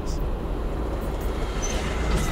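Steady low rumble of an electric light rail train passing close alongside, heard through the open window of an electric car cruising with no engine noise, mixed with the car's tyre and wind noise; a faint high squeal near the end.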